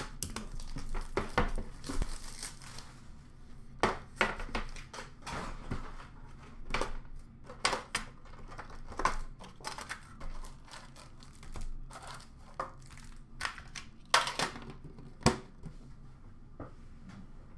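Plastic wrap and foil hockey card packs crinkling and tearing as an Upper Deck collector's tin is unwrapped and emptied, with scattered sharp clicks and knocks of the metal tin and packs being handled.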